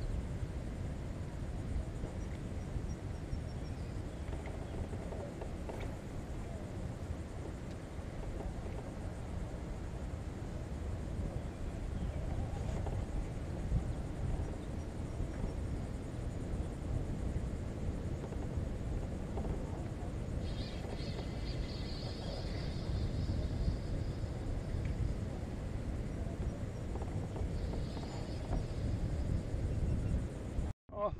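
Steady low wind rumble on the microphone over open water. A brief high chirping comes in about two-thirds of the way through and again shortly before the end.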